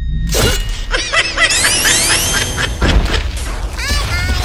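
Cartoon fight sound effects over a music bed: a few hits and booms, with a run of quick rising whistling glides in the middle and a last hit near the end.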